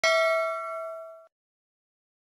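Bell 'ding' sound effect of a subscribe-button and notification-bell animation: one struck bell-like tone that rings and fades out just over a second in.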